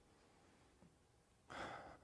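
Near silence, then near the end a short, audible breath picked up by the preacher's microphone, drawn in before he speaks again.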